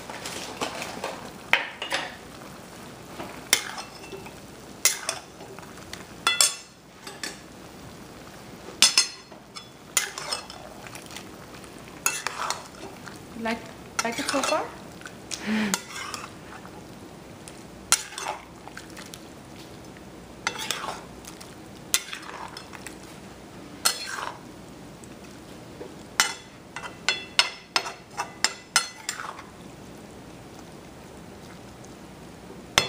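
Metal spatula scraping and knocking against a steel kadai as chicken, tomatoes and spice masala are stirred, over a steady low sizzle of frying. A quick run of knocks comes near the end.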